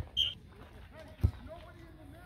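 A soccer ball kicked once with a single sharp thump a little past halfway, over faint distant shouting voices. A brief high-pitched tone sounds right at the start.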